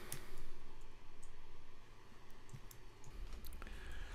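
A few faint, sharp clicks from the computer as the slides are advanced, over a low steady hum.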